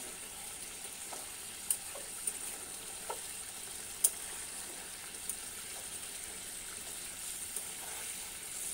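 Thick egg curry gravy simmering and sizzling in a nonstick pan, a steady bubbling hiss. A spoon stirring the gravy knocks against the pan a few times with short sharp clicks.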